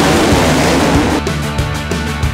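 A pack of off-road motorcycle engines revving together as the riders launch off the start line. Rock music with a steady beat comes in just over a second in.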